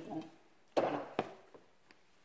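Glass jar being handled on a table: a knock a little under a second in, then a sharper click about half a second later.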